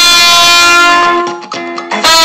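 Trumpet holding one long, loud note for about a second, then breaking off, over a backing track. The backing track carries on more softly through the second half until the trumpet comes back in at the very end.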